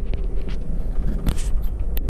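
Interior running noise of an Amtrak passenger train under way: a steady low rumble, with a few light clicks and knocks scattered through it.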